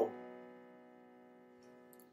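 The last of a held chord on an electric piano keyboard dying away in the first half second, then near silence.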